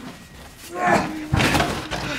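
Wordless male vocal sounds, grunts or groans, with a heavy thump about one and a half seconds in, over a steady low hum.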